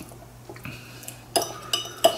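An eating utensil clinking against a bowl while picking up noodles: a few faint taps, then two sharp clinks with a short ring close together near the end.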